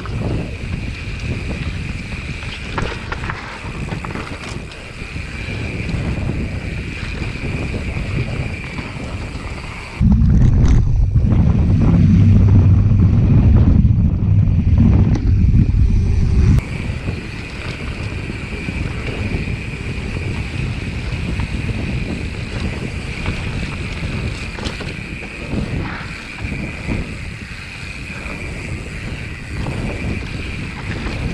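Mountain bike rolling fast down a dirt singletrack: wind rushing over the action camera's microphone, tyre noise and rattles from the bike. From about ten seconds in, a louder, deeper rumble runs for some six seconds and then cuts off suddenly.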